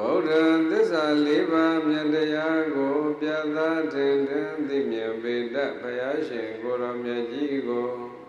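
Buddhist monk chanting solo into a microphone: one long unbroken melodic phrase of held notes with small rising and falling turns. It begins abruptly and tails off near the end.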